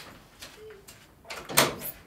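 An exit door being released and pushed open: small clicks of the exit button and lock, then a louder clunk and rattle of the door about a second and a half in.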